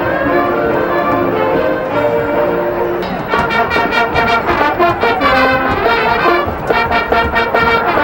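Marching band playing jazz-style show music. Held chords with bell-like tones give way, about three seconds in, to the brass section playing short, punchy rhythmic chords.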